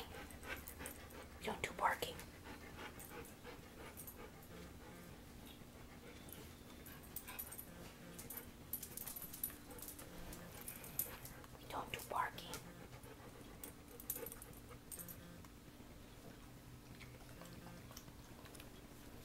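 Two brief whines from a small dog, one about two seconds in and one about twelve seconds in, over quiet room noise with faint rustling.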